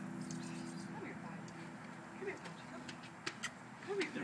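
Hummingbird wings humming in a steady low drone that fades away about a second in. Faint voices and a few soft clicks follow near the end.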